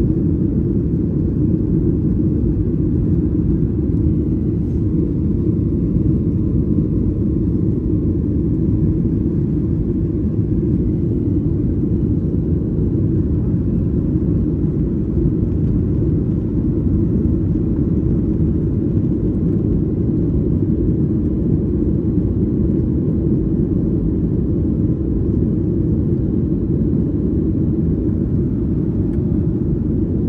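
Steady, deep cabin noise inside a Boeing 737 jet airliner climbing after takeoff: the engines and airflow heard from a window seat over the wing, even and unchanging throughout.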